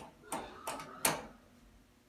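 Otis elevator landing door sliding shut over its aluminium sill, with a few short knocks and rattles, the loudest about a second in.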